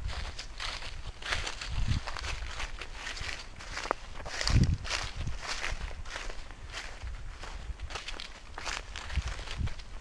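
Footsteps walking through dry grass and dead leaves at a steady pace, each step a short rustle.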